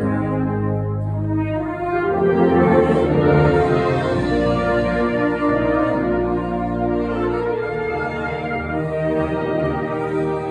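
Wind band playing a concert piece: brass and flutes in full held chords over a deep bass line, swelling to its loudest a few seconds in.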